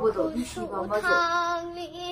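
A young girl's voice: a few quick words, then one long, steady drawn-out note for about the last second.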